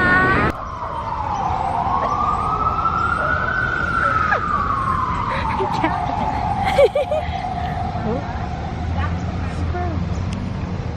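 A street siren wailing: one slow rise in pitch, then a slow fall that settles into a lower held tone, over a steady rumble of city traffic. A brief sharp sound cuts in about seven seconds in.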